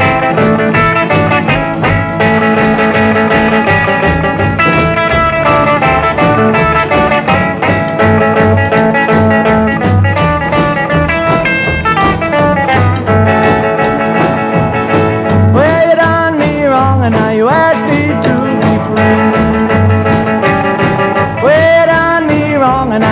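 1956 rockabilly record playing a band passage with guitar over a steady beat, apparently without singing, with notes that slide up and down about two-thirds of the way through and again near the end.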